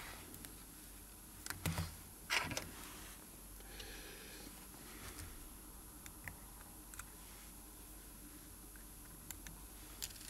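Light clicks and taps of small hand tools and a wristwatch being handled on a bench mat: two short clusters of clicks in the first few seconds, then only a few faint ticks.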